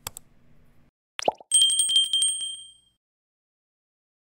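Stock subscribe-button sound effects: a faint click, then a short pop with a steeply falling pitch a little over a second in, then a bright bell ding with a fast tremble that rings for about a second and a half and fades out.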